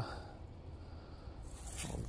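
Faint low rumble with light rustling, and a louder scuffing rustle near the end, typical of wind and handling noise on a phone microphone.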